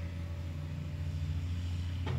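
A steady low hum in the background, with a faint steady tone above it.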